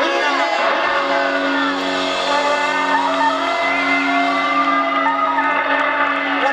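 A live band's sustained closing chord ringing out at the end of a song, with no drumbeat, and voices shouting and whooping over it.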